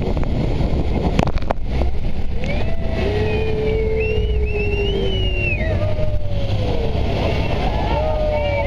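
A loud, steady rush of engine, water and spray from a speedboat in whitewater under a waterfall, with a few knocks on the microphone in the first two seconds. From about two seconds in, several passengers shriek in long cries that slide up and down in pitch, lasting about four seconds.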